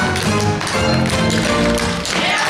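A group of dancers tap dancing on a stage: quick, repeated tap-shoe strikes on the floor over accompanying music.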